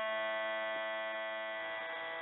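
A steady musical drone: one held note with many overtones, sustained alone and slowly fading a little, like the drone accompaniment beneath devotional chanting.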